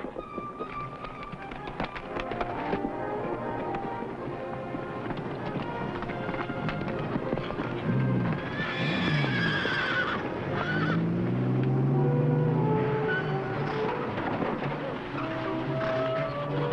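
A horse galloping under a music score, with a horse neighing about eight seconds in: a high, wavering call that falls in pitch over about two seconds.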